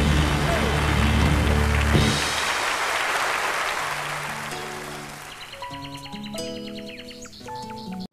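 A live audience applauds over a band's closing chords. The band stops about two seconds in and the applause fades away over the next few seconds. Quieter music made of short, separate notes then begins.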